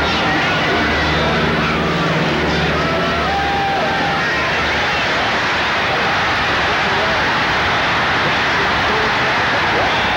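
Large stadium crowd noise: thousands of fans cheering and shouting in a steady, dense din through a football play.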